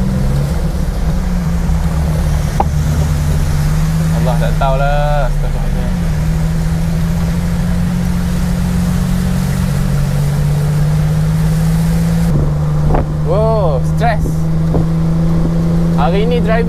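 Daihatsu Hijet microvan's engine droning steadily at road speed, heard from inside the cabin over a constant hiss of heavy rain and road noise; the engine note shifts in pitch a little, most clearly about twelve seconds in.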